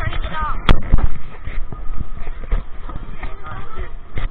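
Heavy thumps and knocks right at the microphone of a body-worn camera as it bumps against an inflatable snow tube being carried: two loud thumps within the first second, then a run of lighter knocks.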